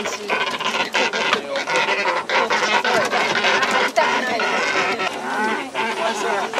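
Captive fishing cormorants calling from their bamboo baskets, over people talking, with a few sharp knocks as the baskets are handled.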